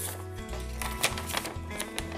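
Background music with sustained chords over a slow bass line, with a few light paper rustles as a letter is unfolded.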